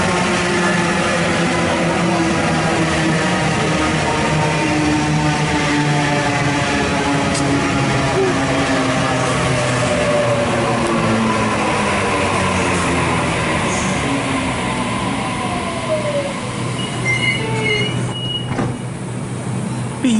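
Waratah Series 2 electric train at the platform: its traction and onboard equipment give a loud whine of many tones that slowly shift in pitch. A short high beep sounds near the end.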